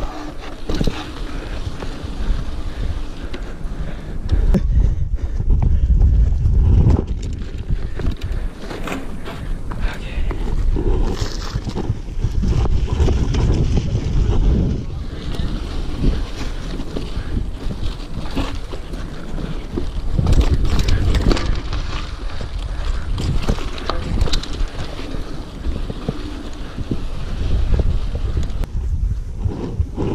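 Mountain bike riding over dry, rocky dirt singletrack, heard through a GoPro's microphone: wind buffets the mic, tyres crunch on dirt, and the bike clatters and knocks over bumps.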